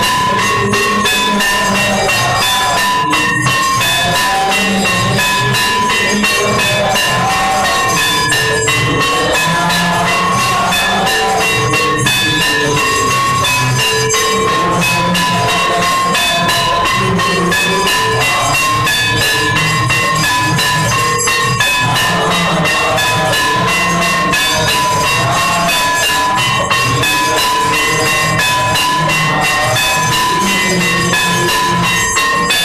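Hindu temple aarti music: bells ringing over fast, continuous percussion, loud and unbroken.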